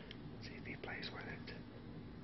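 Small bell inside a hanging cat-toy ball jingling and tapping in a few short, light strikes as a kitten bats it, over a steady low room hum.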